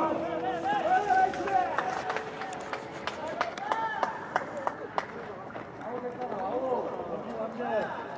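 Several men's voices shouting and calling out on a baseball field, overlapping one another, with scattered sharp claps or knocks.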